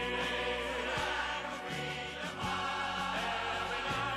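Choral music: a full ensemble of voices singing sustained chords over an orchestral backing, with a low beat recurring about every second and a half.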